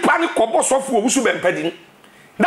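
A man talking animatedly, his voice swinging up and down in pitch, falling silent near the end.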